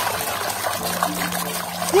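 Water sloshing and splashing in a plastic bowl as a hand rubs a mud-covered plastic toy figure clean under the water.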